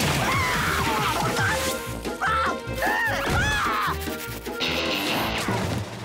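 Cartoon sound effect of a jet of water blasting and splashing, starting suddenly at the very start, over background music.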